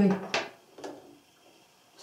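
A woman's speech ending about half a second in, followed by quiet room tone.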